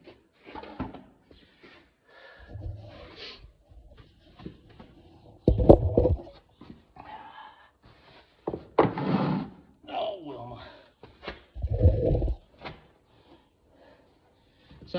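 Irregular handling noise and dull knocks as a horse's hoof is brought forward and set on a hoof stand during a trim, with two louder thumps about six and twelve seconds in.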